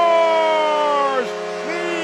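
Arena goal horn sounding after a home goal, a loud steady low tone, with a higher tone that slides slowly down and cuts off a little past a second in, then starts again near the end.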